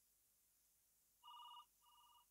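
Faint warbling electronic ring, like a telephone ringer: one short burst about a second in and a second, quieter one near the end, after near silence.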